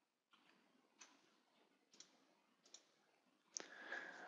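Near silence: faint room tone with a few faint short clicks, about one a second, the last one near the end a little stronger.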